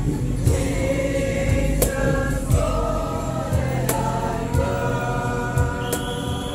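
A mixed choir singing a Christmas carol with long held notes, accompanied by acoustic guitars and a steady low beat with sharp percussive strikes every couple of seconds.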